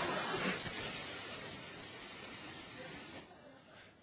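Live audience applauding, dying away about three seconds in.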